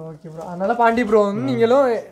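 A man's voice speaking with long, drawn-out vowels that glide up and down in pitch.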